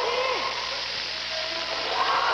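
A large domino setup toppling in a chain: thousands of tiles clattering together into a continuous, dense rattle.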